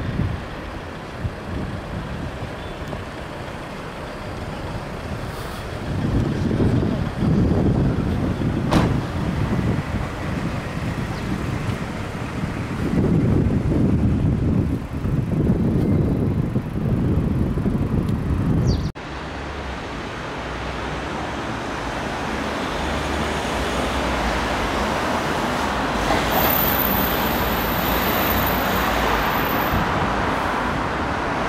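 City road traffic noise, with low rumbling surges through the first two-thirds. An abrupt cut about two-thirds of the way in gives way to a steadier traffic hiss that slowly builds, with a faint high whine near the end.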